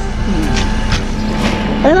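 A steady low mechanical hum with a constant pitch, under faint voices, and a short exclamation near the end.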